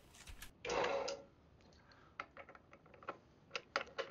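Light metal clicks and taps from a hand tool working the upper blade guide bearing adjuster on a combination bandsaw, with a short scrape about a second in. The clicks come quickly and irregularly, the footage sped up to double speed.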